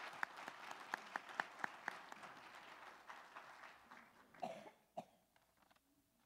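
Faint audience applause, many separate claps that thin out and fade away over about four seconds, with a brief laugh at the start.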